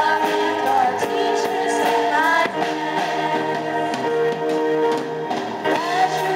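Children's choir singing in unison to live accompaniment from strummed acoustic guitars and a drum kit keeping a steady beat.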